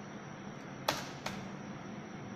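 Two sharp clicks about half a second apart, the first louder, over a steady low hiss of room tone.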